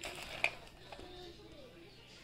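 Light handling of a cardboard toy box on a plastic mailer, with one sharp click about half a second in. Faint voices in the background.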